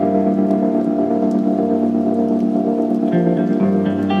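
Instrumental heavy psychedelic rock: a held, sustained guitar chord rings steadily under a grainy, hissing texture, and new higher guitar notes come in about three seconds in.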